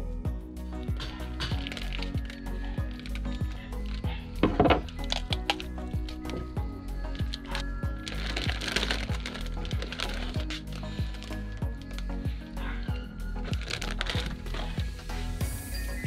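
Background music with a steady beat, with a brief loud noise about four and a half seconds in.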